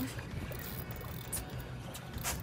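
Steady low hum of a boat's idling outboard engine under wind and water noise.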